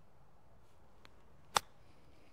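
A golf wedge striking the ball on a short flop shot: a single sharp click about one and a half seconds in.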